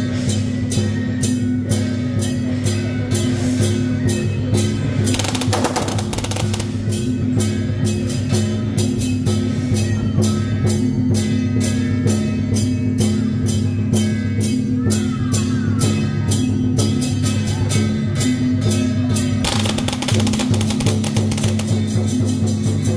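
Procession percussion music: drums beating at a quick steady pulse over a steady low drone, with two stretches of dense crashing, one about five seconds in and another near the end.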